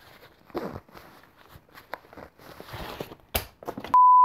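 Snugpak Softie 3 synthetic-fill sleeping bag being squeezed down in its nylon compression sack: rustling fabric in several uneven bursts, with a sharp click near the end.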